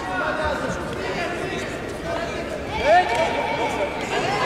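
Several voices talking and calling out in a large, echoing hall, overlapping one another, with one louder rising call about three seconds in.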